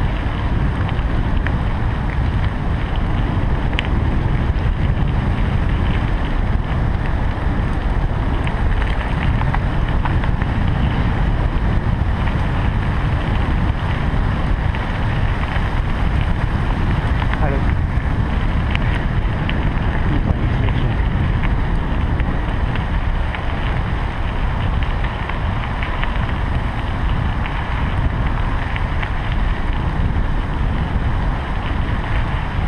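Wind rushing over the microphone of a camera on a moving bicycle: a loud, steady, deep rumble, with the tyres rolling on the path beneath and a few faint clicks.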